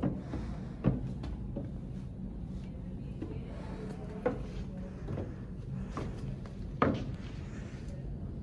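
Footsteps knocking on a wooden practice staircase as a person steps down it one foot per step: about five separate, unevenly spaced knocks, the loudest near the end.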